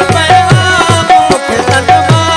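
Live Sindhi Sufi folk music: a tabla-type hand drum keeps a steady beat of deep strokes that slide down in pitch, about two a second, under a held melody line.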